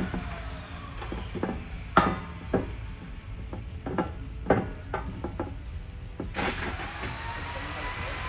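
Irregular metal knocks and clinks as a wrought-iron gate is lowered onto the hinge pins of its post, brass bushings in the hinges, while it is worked into place; the loudest knock comes about two seconds in. A steady faint hiss runs underneath.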